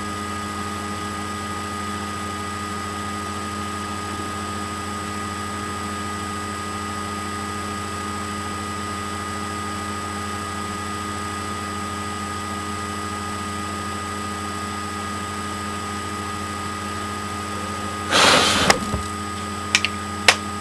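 Steady electrical hum and hiss with several fixed whining tones: the recording's background noise. About eighteen seconds in comes a brief rush of rustling noise, then a couple of faint clicks near the end.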